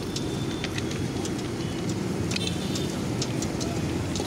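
Steady low rumble of street traffic, with a few light clicks and clinks over it.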